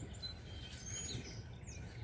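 Small birds chirping in short, high calls, one sweeping call near the end, over a steady low background rumble.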